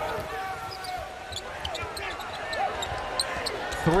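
A basketball being dribbled on a hardwood court, with sneakers squeaking and players' voices calling out on the floor.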